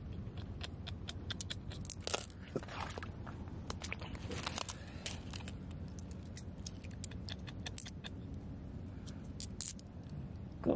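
Oyster shells and small stones clicking, crunching and scraping against each other as a hand sifts through them in shallow water, with irregular sharp clicks scattered throughout.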